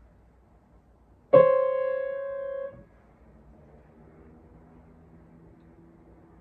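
Piano playing a minor second interval for an ear-training question. A loud note is struck about a second in and rings for just over a second before it is damped, and faint lower tones sustain after it.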